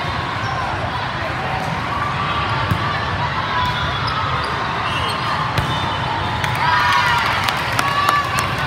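Steady din of a large hall full of volleyball games and spectators, with the sharp smacks of volleyballs being hit and hitting the floor, which come more often in the second half. Players shout and cheer near the end as the rally finishes.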